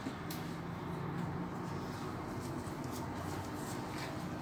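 Quiet room tone: a faint steady low hum with a few soft, faint clicks.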